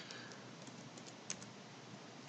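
Faint computer keyboard typing: a few scattered keystrokes, spaced out.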